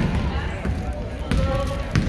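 Basketball dribbled on a hardwood gym floor: a few bounces, roughly one every two-thirds of a second.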